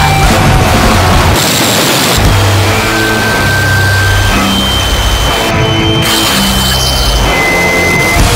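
Harsh noise music, loud and dense distorted noise cut up into blocks that change abruptly every second or so. Brief steady high tones and low held pitches come and go between the cuts.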